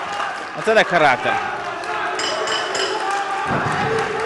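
A sports-hall crowd keeps up a steady noise during the kickboxing bout, with voices shouting over it; about a second in, one loud voice rises and falls in pitch.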